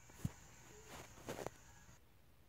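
Faint handling noise from a phone camera being moved about: a light knock about a quarter second in and a few soft taps a little past the middle.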